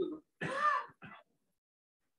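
A man clearing his throat: a louder rasp about half a second in, followed by a brief second one.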